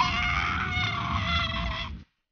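A high-pitched, drawn-out cry that glides up and then holds one pitch for about two seconds, over a low rumble, and cuts off abruptly at the end.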